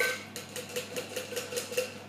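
Metal cocktail shaker tin and fine strainer tapped together: a sharp knock, then a quick even run of about eight metallic taps, roughly five a second, each with a short ringing note, knocking the last of the foamy egg-white sour through the strainer.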